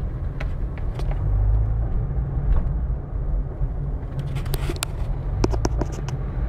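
Car driving, heard from inside the cabin: a steady low rumble of engine and road noise, with a few sharp clicks scattered through it, more of them near the end.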